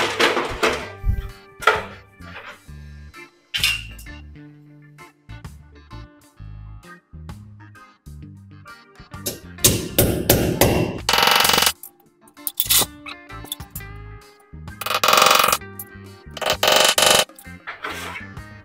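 Hammer driving a nail through a metal ceiling rail into the wall: repeated irregular metallic strikes with a short ring, loudest in two quick runs in the second half.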